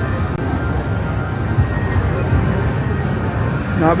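Background music playing over the steady low din of a busy casino floor.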